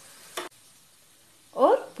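Gas stove burner hissing faintly under a charred aubergine, then a short sharp puff about half a second in as the burner is switched off and the hiss stops.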